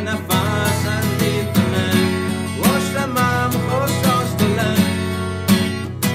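Recorded song: a guitar-like plucked string instrument over a steady beat, with a melody line that bends in pitch.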